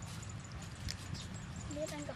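Kitchen knife cutting cauliflower against a wooden chopping board: a few short, sharp knocks. A woman's voice comes in near the end.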